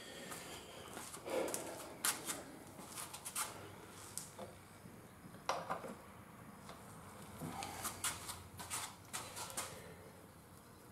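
Faint, scattered clinks and light knocks of metal tools and floor-jack parts being handled on a workbench.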